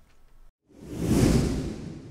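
Whoosh transition sound effect marking a cut to a section title card. A swell of rushing noise with a deep low rumble builds quickly just under a second in, then fades away over the next second or so.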